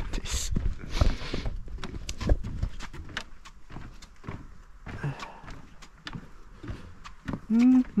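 Footsteps of a person walking on a path: a run of irregular steps and scuffs, with a short hum near the end.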